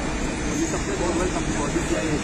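Indistinct voices over a steady low rumble of street traffic.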